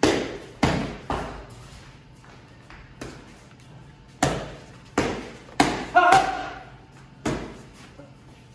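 Boxing gloves striking focus mitts in quick combinations: about nine sharp smacks that echo around the gym, the loudest pair around six seconds in.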